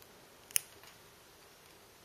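A single sharp plastic click about half a second in, from a locking stitch marker snapping shut on the crochet work, followed by a couple of faint ticks; otherwise quiet room tone.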